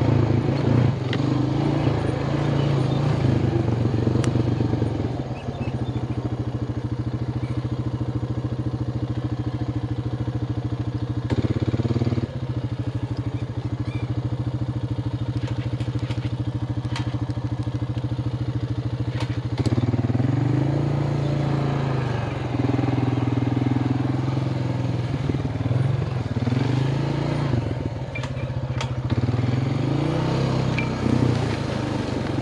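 Single-cylinder ATV engine running on a dirt trail. It varies at first, then settles to a steady, even note for most of the middle, with a brief throttle change partway through. About two-thirds of the way in it pulls away again, its pitch rising and falling with the throttle, and light clatter from the machine runs under it.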